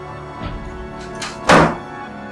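A wooden room door shutting with a single loud thud about one and a half seconds in, over background music with sustained tones.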